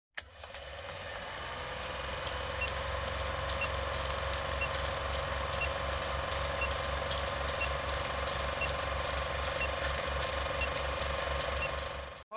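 Film projector sound effect: the steady mechanical clatter of an old film projector running, with a rapid rhythmic ticking and a hum, and a short faint beep once a second for the countdown leader.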